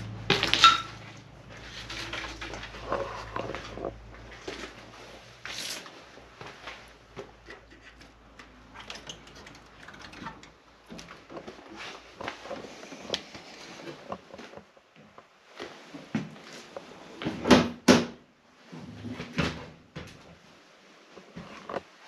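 Footsteps scuffing and crunching over a debris-strewn floor, mixed with irregular knocks and rattles as a wooden door is pushed through. There are sharper knocks right at the start and a pair of louder ones about three quarters of the way through.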